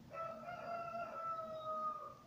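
A rooster crowing once: one long call of about two seconds, dropping slightly in pitch near the end.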